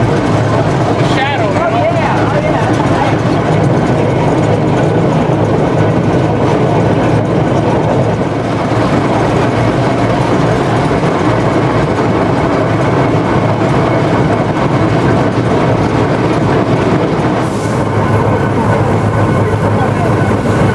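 Climax geared steam locomotive running under way, heard from inside its cab: a loud, steady din of engine and running noise that holds unbroken.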